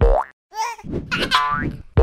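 Cartoon 'boing' sound effects: a short rising boing, then a run of springy boings that climb in pitch, part of an animated logo sting as the logo letters pop onto the screen.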